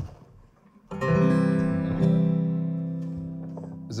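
A single guitar chord strummed about a second in, left to ring and slowly fading over about three seconds.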